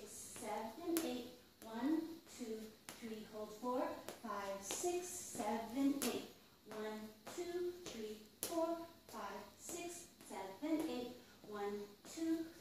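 A woman's voice counting the dance steps aloud in time, a syllable about every half second, with sharp taps of cowboy boots on a tile floor between the counts.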